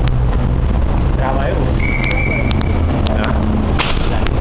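Busy city sidewalk ambience: a steady low rumble of traffic with snatches of passersby's voices. About two seconds in a thin high-pitched tone sounds for about a second, and a sharp click comes near the end.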